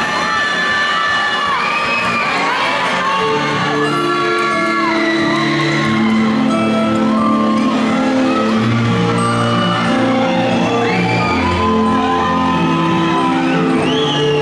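Audience whooping and cheering in a large hall, with music beginning about three and a half seconds in: long, held low notes that build under the crowd as the dance piece opens.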